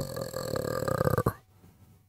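A man's low, rough, croaking vocal sound, the tail of a drawn-out falling voice, stopping about a second and a half in.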